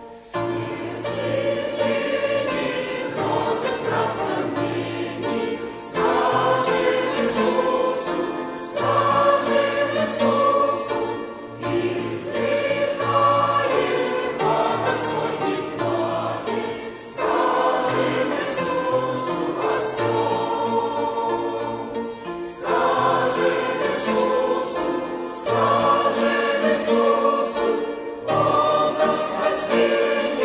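Congregation and choir singing a Russian hymn together, phrase by phrase, each phrase about five or six seconds long with a brief dip between phrases.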